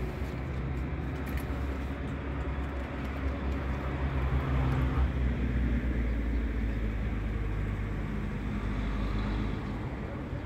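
A motor vehicle's engine running close by as street traffic, a steady low hum that grows louder about halfway through and drops off near the end.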